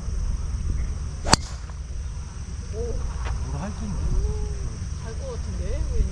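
A golf driver striking the ball off the tee: one sharp crack a little over a second in. Behind it, a steady high insect hum and a low rumble.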